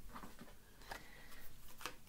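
Faint handling noises as a fallen card is picked up and a deck of cards is handled: a low rustle with three soft clicks, the last one near the end the loudest.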